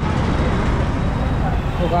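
Steady street traffic noise with a heavy low rumble, starting abruptly; a man's voice comes in near the end.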